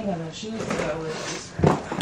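Women's voices talking quietly in a small room, with one short thump about three-quarters of the way through.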